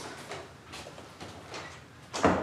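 Footsteps of two men walking across a wooden floor, a few even steps about half a second apart.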